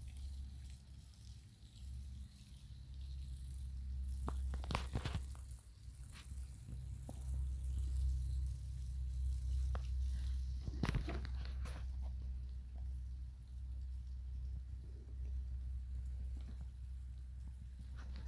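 Masses of emerging periodical cicada nymphs crawling over dry leaf litter, a soft crackling patter that sounds like rain, over a low steady rumble. A few louder knocks come at about five seconds and again at about eleven seconds.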